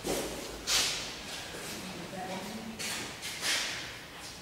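Faint murmured voices, with three short rustling noises: one about a second in and two near the end.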